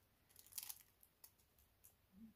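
Faint crinkling of a sheet of nail transfer foil being peeled off a tacky gel nail: a soft rustle about half a second in, then a couple of small ticks.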